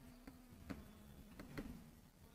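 Near silence: a faint steady low hum with a few faint taps of a pen tip on an interactive writing screen, about a second in and again near the end, as words are written.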